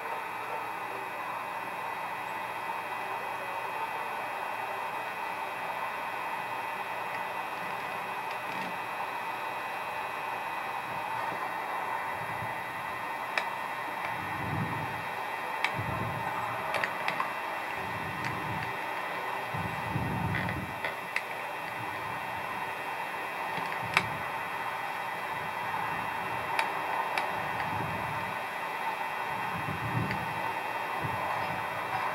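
Steady hiss and hum with a few faint clicks, and soft low thumps about every second and a half in the second half.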